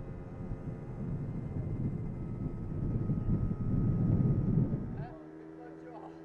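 Gusty wind buffeting the microphone over a steady vehicle engine hum, the rumble growing louder. About five seconds in the wind drops away suddenly, leaving the engine hum and faint voices.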